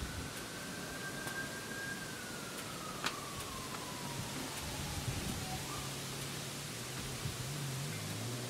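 Steady hiss of the propane burners under a heated Blackstone flat-top griddle, with a few light taps as slices of French bread are laid on it. A faint, thin, long tone holds and then slowly falls in pitch through the first half.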